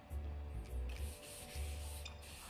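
A scrub brush rubbing on a wall in a few back-and-forth scrubbing strokes, quiet, over faint music.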